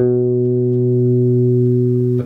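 Electric bass guitar: a single low B, plucked once and left to ring steadily for about two seconds. It is the note reached by a first-finger slide while descending an A major scale.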